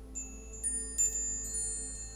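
Hanging metal-tube wind chime brushed by hand, giving several high ringing tones that start just after the beginning, with fresh strikes about half a second and a second in, and ring on. Soft background music continues underneath.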